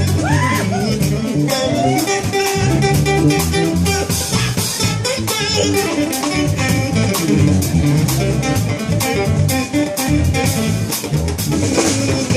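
Live band playing an instrumental passage: electric guitar lead with bent notes near the start, over electric bass guitar and a drum kit keeping a steady beat.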